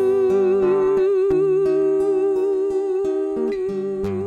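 A woman's voice holds one long, slightly wavering hummed note over an acoustic guitar picking out single notes and chords: the closing bars of a slow acoustic song.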